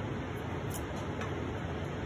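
A few faint clicks of a small plastic jar of powder being opened by hand, its cap taken off and the seal peeled back, over a steady background hiss.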